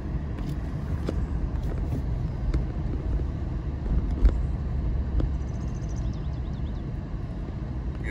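Car cabin noise while driving slowly: a steady low rumble of tyres and engine, with one sharp knock about four seconds in.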